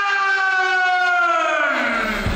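A ring announcer drawing out a fighter's name in one long held call, the pitch sliding down near the end.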